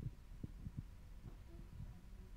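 Faint, irregular low thumps, about half a dozen, over a steady low hum.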